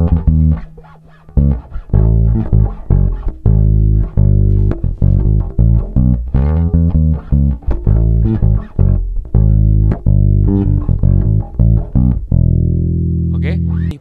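Pedulla MVP5 five-string electric bass playing the intro's moving bass line, a run of plucked notes through E, D♯, C♯, A, G♯ and F♯. It ends on one long held note near the end.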